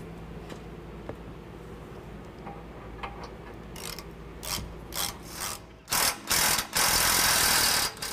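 Socket ratchet clicking as the hitch mounting bolts are snugged down. Near the end a cordless power tool runs in two short bursts, then steadily for about a second.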